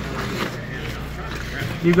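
Nylon backpack fabric rustling as the main compartment is pulled and held open by hand, over faint background voices and a low steady hum.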